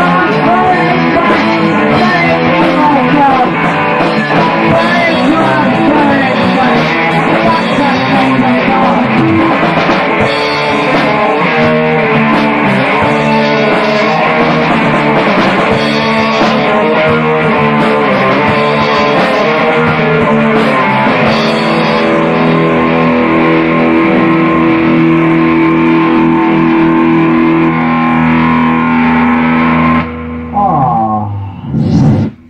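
Rock song with electric guitar playing, settling into a long held chord over the last several seconds.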